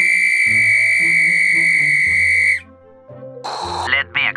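A loud, shrill whistle blast held on one steady pitch, cutting off sharply about two and a half seconds in, over soft background music.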